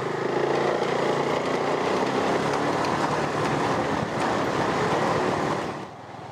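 Motor scooter's engine running steadily while riding, with road and wind noise over it; the sound cuts off suddenly just before the end.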